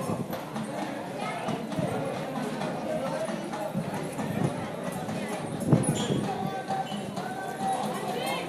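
Indistinct chatter of several people's voices, with scattered knocks and a sharper knock about six seconds in.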